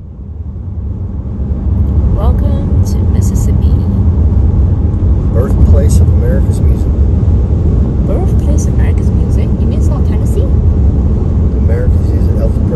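Road and wind rumble of a car at highway speed, heard from inside the car. It builds over the first two seconds, then stays steady and loud.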